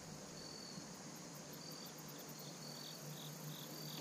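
Faint cricket chirping: short high chirps repeating about every half second, with a quick run of fainter, higher ticks about one and a half seconds in, over a low steady background hiss.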